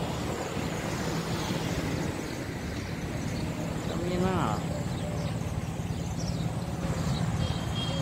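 City buses idling and moving at a bus terminal: a steady low engine hum with traffic noise. A short voice is heard about four seconds in, and a brief high-pitched tone near the end.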